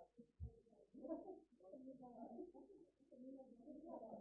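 Near silence with faint, indistinct voices chattering in the room.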